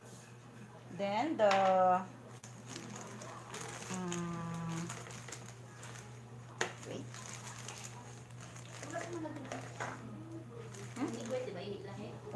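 A plastic bag crinkling as it is handled, with two short wordless vocal sounds: a louder rising one about a second in and a held one around four seconds. A single sharp click comes about halfway through.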